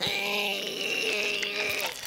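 A cartoon character's voice held in one long strained groan at a steady pitch, the effort of straining to push up a barbell pinned on his chest. It cuts off just before the end.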